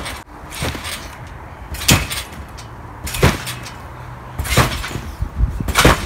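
Trampoline bouncing: feet landing on the mat in five sharp thuds about every 1.3 seconds during a run of flips.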